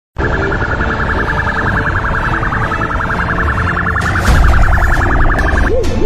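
Siren sound in a fast warble that switches, near the end, to a slower rising-and-falling wail about two to three times a second. A low rumble runs underneath, and a louder thump comes about four seconds in.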